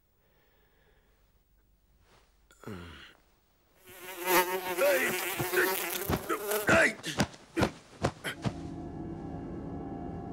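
A housefly buzzing loudly at close range, its pitch wavering as it darts about. It is followed by a quick run of sharp swishes and thumps as a pillow is swung at it, then a steadier hum near the end.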